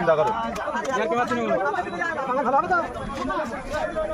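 Several people talking over one another: busy market chatter.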